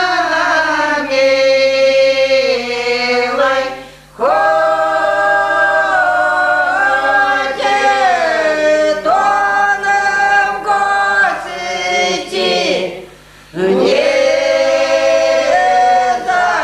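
A group of elderly village women singing a traditional Russian folk song a cappella, with long held notes; the singing breaks off briefly for a breath about four seconds in and again about thirteen seconds in.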